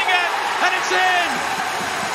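Football TV commentator calling a goal as the curled shot goes in, his voice ending about a second and a half in, over a steady wash of stadium crowd noise.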